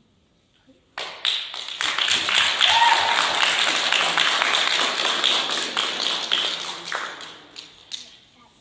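Audience applause after a song ends: about a second of near silence, then many hands clapping that starts suddenly, holds for about five seconds and dies away, with a few last claps near the end.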